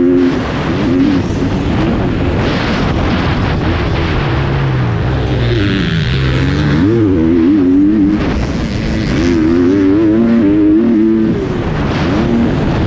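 GasGas 250 motocross bike's engine under hard riding, its pitch repeatedly climbing and dropping as the rider accelerates, shifts and backs off through the turns.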